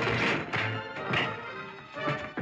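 Film score music playing under fistfight sound effects: loud hits and crashes at the start and again just over a second in.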